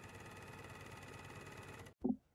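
An Ezy-Lock 304D overlocker (serger) is running steadily while it overlocks the edge of stretchy cotton jersey. It makes a fast, even stitching rhythm under a steady whine, and stops abruptly at the end.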